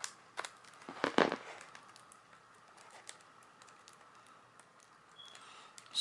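Plastic shrink wrap on a CD jewel case crinkling and crackling as scissor points poke into it, a short cluster of sharp crackles about a second in, then only faint rustles.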